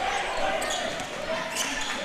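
Basketball arena ambience during live play: a steady murmur of crowd voices with a basketball bouncing on the hardwood court.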